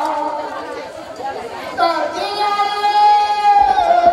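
Music with a voice singing long held notes. One note fades out in the first second, and a new steady note begins a little under two seconds in.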